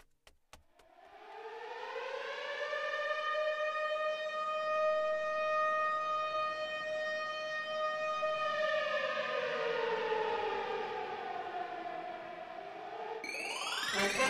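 Civil-defence air-raid siren winding up over a couple of seconds, holding one steady wail, then slowly winding down near the end: an evacuation warning.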